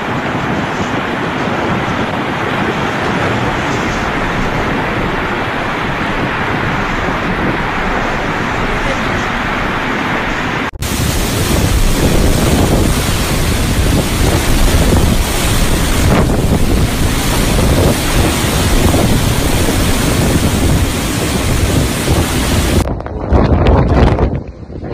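Strong blizzard wind blowing, with gusts buffeting the microphone. About eleven seconds in it cuts abruptly to a louder, rougher stretch with heavy low rumble.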